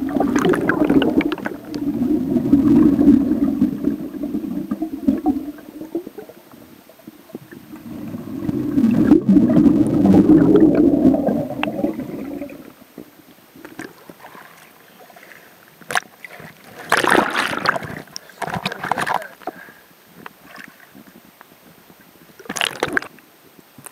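Scuba exhaust bubbles heard underwater: two long, low, rumbling exhalations bubbling past the camera. Near the end come shorter, brighter bursts of bubbling and splashing.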